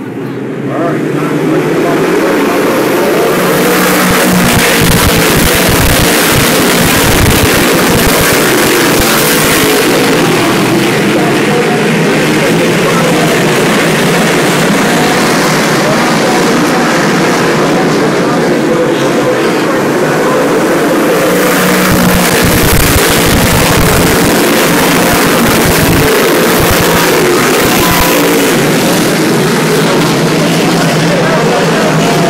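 A field of dirt modified race cars running hard around the oval, a loud, continuous engine din that builds over the first couple of seconds. It swells twice as the pack comes past.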